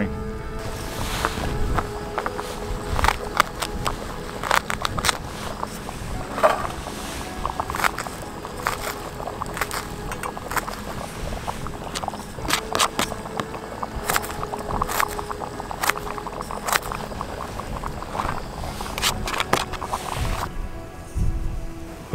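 Kitchen knife chopping carrots and green vegetables on a plastic cutting board: a run of sharp, irregular taps, over background music with a held tone. The chopping stops about a second and a half before the end.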